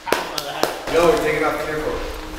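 Three sharp snaps within the first second, then a man's voice without clear words for about a second.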